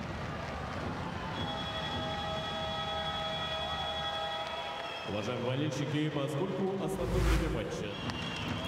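Arena crowd noise with a long, steady horn blast from about a second and a half in to about five seconds, sounding for the end of regulation time. It is followed by a short music sting with a whoosh and a deep boom near the end.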